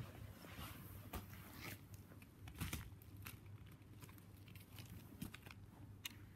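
Faint handling noise: scattered small clicks and soft crinkly rustles as objects are moved about on the carpet by hand, with a sharper click at the very start.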